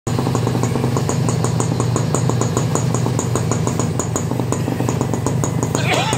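Honda motorcycle engine idling at the exhaust silencer: a steady low hum with a sharp, regular tick about six or seven times a second. The owner attributes this sound to the bike's CDI ignition unit.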